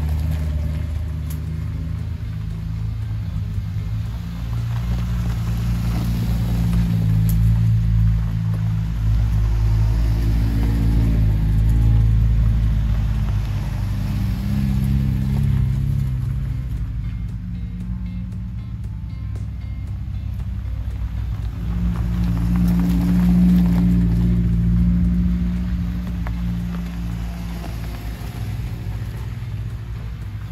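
Low engine rumble of Suzuki Jimny off-roaders crawling up the track toward the microphone, the pitch stepping up and down with throttle and swelling twice as the vehicles draw near.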